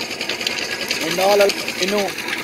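A small engine running with a rapid, even clatter, with a voice over it about a second in.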